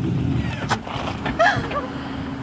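LS1 V8 engine of a swapped BMW E36 running steadily at low revs with a deep rumble, and a short click a little under a second in.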